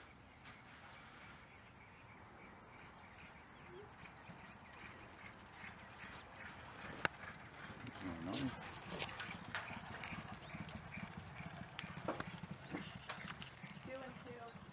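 Thoroughbred racehorse galloping on a dirt track: rapid hoofbeats that grow louder about halfway through as the horse comes near, then keep up to the end.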